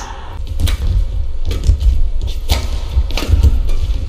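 Badminton rally: rackets strike the shuttlecock in sharp cracks about once a second, over the players' footfalls on the court.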